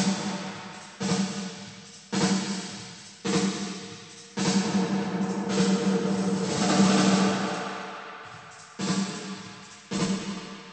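Recorded snare drum hits, about one a second, played through a Lexicon 224 digital reverb on its big 1980s snare program. Each hit is followed by a long, bright reverb tail that dies away. In the middle the tail swells and hangs on longer before fading. The split between bass and treble decay is being shifted with the reverb's crossover control.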